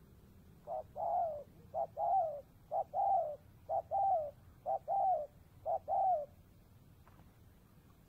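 Spotted dove cooing: a short note followed by a longer, falling coo, repeated six times at about one pair a second.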